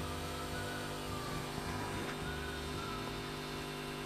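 Steady low electrical hum with a faint hiss underneath, the recording's background noise.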